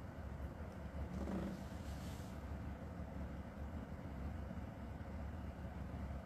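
Quiet, steady low rumble of room background noise, with no speech or guitar playing.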